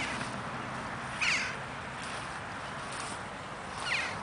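A bird calling outdoors: three short, downward-sliding high calls, the loudest about a second in, over a steady background hiss.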